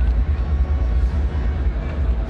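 Stadium ambience at a football match: a steady low rumble under an even background hiss, with no distinct crowd reaction.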